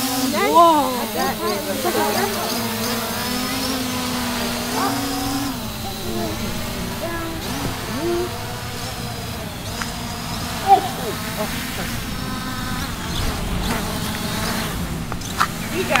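Small camera quadcopter drone's propellers buzzing steadily as it flies low, the pitch shifting as it manoeuvres and dropping away as it is brought down to land. A brief sharp knock about two-thirds of the way through.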